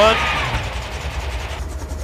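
Bell 47 G-2's Lycoming six-cylinder piston engine, a low steady drone, winding down as the throttle is rolled off for the sprag clutch check, with its higher hiss falling away near the end. The engine slows while the rotor freewheels, and the engine and rotor RPM needles split: the sprag clutch is working.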